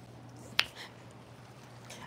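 A single sharp click about half a second in, over faint room tone with a steady low hum.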